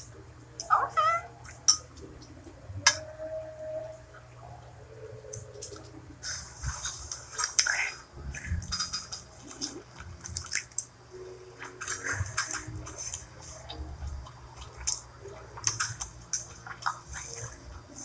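Lobster being eaten, with wordless vocal sounds: a short rising squeal about a second in and a held hum a few seconds later, then a run of short smacking, crunching mouth sounds.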